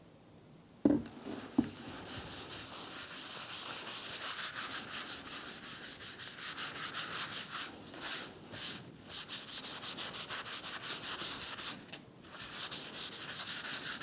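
A white cloth wiped briskly back and forth over a flat walnut board, spreading clean spirit across the wood: a long run of dry rubbing strokes with a few short pauses. Two light knocks come about a second in, before the rubbing starts.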